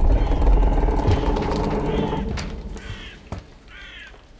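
Low rumble of a heavy door-like thud dying away over about three seconds, with a few short high chirps and a sharp click shortly before the end.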